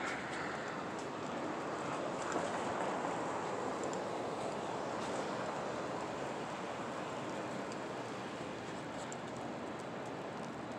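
Street traffic at a distance: a steady rushing noise that swells a little in the middle and eases off again.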